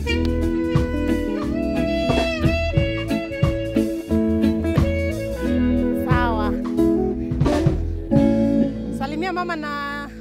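Live band music: guitar with held notes over a drum kit. Near the end the bass fades and a voice comes in.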